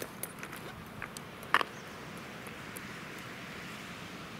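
Beach pebbles clacking together a few times as stones are handled and picked up from the shingle, the loudest click about one and a half seconds in, over a faint steady hiss.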